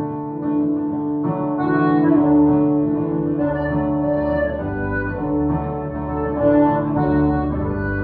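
Live folk band playing an instrumental introduction: a held, reedy melody line, most likely the accordion, over guitars and a steady bass.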